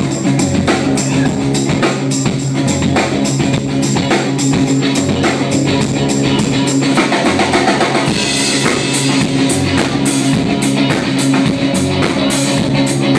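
Live band playing an instrumental passage: electric guitar, drum kit with a steady beat, and upright double bass, with cymbals getting brighter in the second half. Recorded through a phone's microphone in the club, so the sound is rough and boomy.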